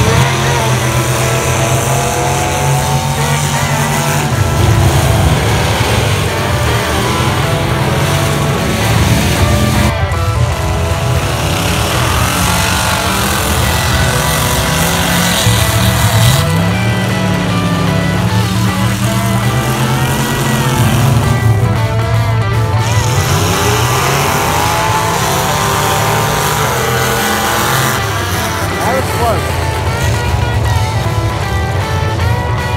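Mud-racing trucks' engines running hard, their revs rising and falling, with several abrupt cuts in the sound.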